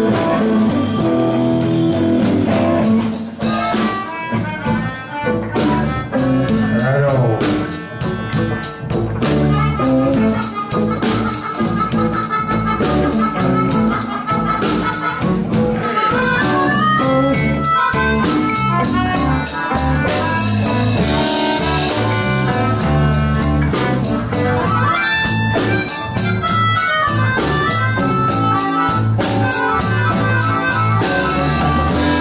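Live blues band playing: electric guitar, electric bass and drums, with a melodica blown into a microphone carrying held, sliding lead notes from about a third of the way in.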